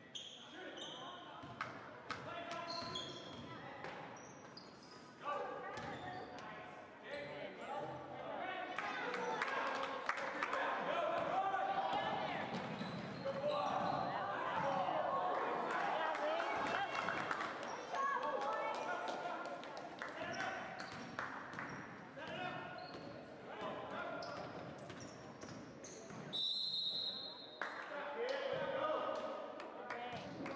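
A basketball bouncing on a hardwood gym floor during play, with indistinct shouts from players and spectators in a large gym. The voices grow louder through the middle of the stretch.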